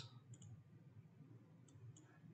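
Near silence, broken by a few faint computer-mouse clicks: two about a third of a second in and two more near the end.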